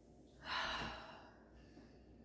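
A woman's long, breathy sigh about half a second in, fading out over nearly a second: an impatient sigh.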